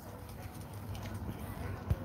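Handling noise of a phone held in the hand while its screen is tapped: an uneven low rumble, with a soft thump near the end.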